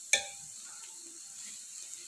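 A perforated steel spoon clinks once against the steel pot just after the start. Then comes a steady faint sizzle of grated-carrot halwa and khoya frying in ghee.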